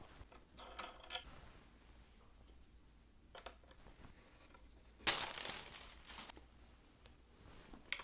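Roland CY-5 cymbal pads being handled and fitted onto their stands: a few faint clicks and knocks, and one louder rustle about five seconds in that fades over about a second.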